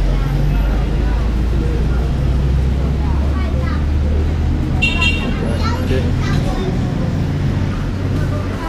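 Steady low drone of an idling engine, loud and unbroken, with scattered voices of a busy street over it.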